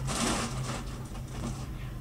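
Plastic packaging rustling as it is handled, loudest in the first moment and dying away after about a second and a half.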